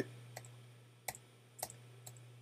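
A few faint computer keyboard keystrokes, single clicks about half a second apart, over a low steady hum.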